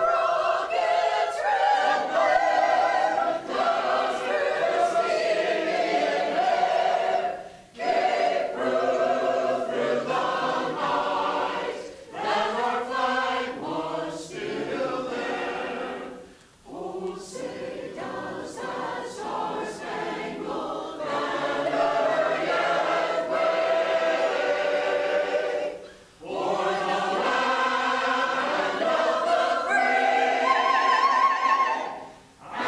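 A community choir singing in unison phrases, with short breath pauses between phrases about a third and two-thirds of the way through.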